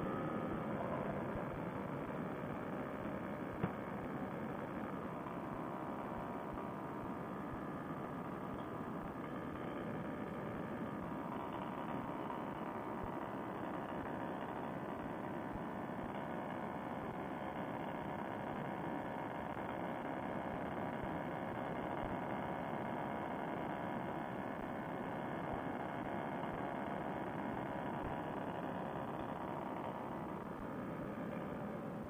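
Fresh Breeze Monster two-stroke paramotor engine and propeller running steadily in cruise flight, easing slightly down in pitch in the first second. A single click sounds about three and a half seconds in.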